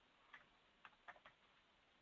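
A few faint, short clicks of a computer mouse and keyboard against near silence, about five of them with a quick run of three just after the middle, as a dialog is filled in and confirmed.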